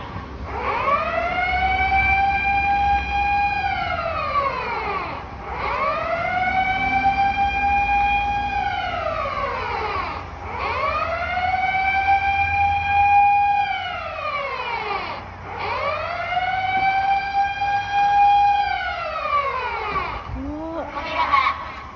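A siren sounding in four long, even cycles. Each cycle rises quickly in pitch, holds steady for about two seconds, then falls away before the next begins.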